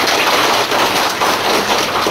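Large audience applauding, a dense, steady clapping.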